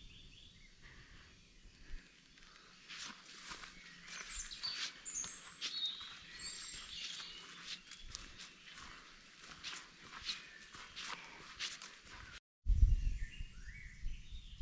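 Footsteps rustling along a woodland path, with birds chirping high above them. Near the end, after a brief break, there is a louder low-pitched rumble.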